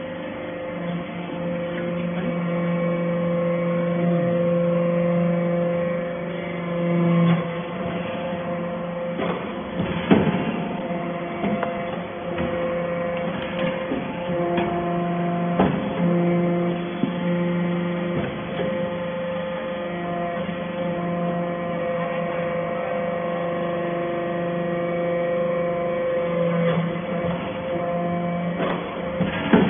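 Hydraulic metal-chip briquetting press running: a steady motor and pump hum whose tone changes in steps every few seconds as the press works through its cycle. A few sharp metallic knocks sound over it.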